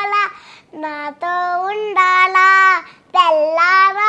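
A young girl singing a song unaccompanied, holding long notes that bend in pitch, in phrases broken by short pauses about half a second in and about three seconds in.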